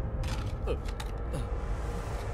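Two short, falling creaks over a low, steady rumble.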